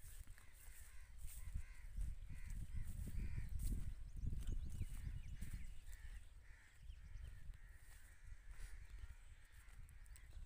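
Birds calling over and over in short, harsh calls, about two a second for most of the stretch, thinning out near the end, over a low rumble of wind on the microphone.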